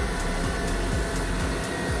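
Steady rushing noise with a faint hum from a Boeing 757 on the ramp: the APU running while the RB211 engine coasts down after its starter air has been cut off at the end of dry motoring.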